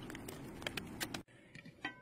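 A few faint clicks of a metal spoon against the crock pot as it stirs soft, slow-cooked apple slices, then near silence after about a second.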